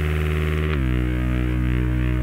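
Novation Bass Station 2 synthesizer holding a low, sustained droning note. About three-quarters of a second in, the pitch steps down and the tone turns darker.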